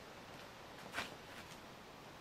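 A single short, sharp click about a second in, with a couple of fainter ticks around it, over faint outdoor background noise.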